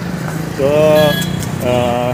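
A vehicle engine idling in street traffic with a steady low hum, while a voice draws out a long sound about half a second in and starts again near the end.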